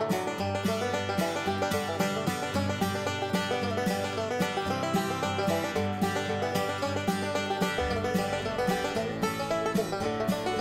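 Background music with a quick run of plucked-string notes.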